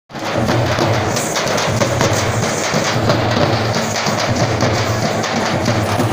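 A group of dappu frame drums beaten with sticks, playing a fast, driving rhythm of many overlapping strokes without a break.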